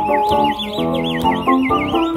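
A high, bird-like warbling whistle sweeps quickly up and down about eight times over music from a keyboard backing track.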